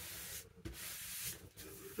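Hand rubbing across paper, smoothing a freshly glued paper image down onto an envelope: two soft strokes of dry friction, the second a little longer.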